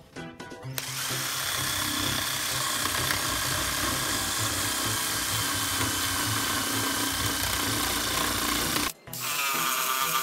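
Corded electric drill spinning an abrasive wheel against hard ulin (ironwood) in a carved tray, sanding the hollow. After a few short starts it runs steadily for about eight seconds, then stops briefly near the end and spins back up with a rising whine.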